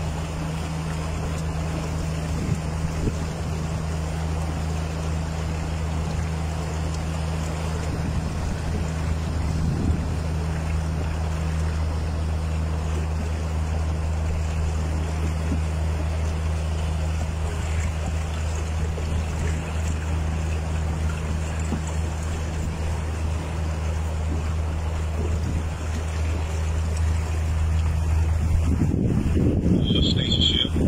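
A steady low engine-like hum runs under wind and water noise on a small sailboat under way. Near the end the hum stops and wind on the microphone grows louder.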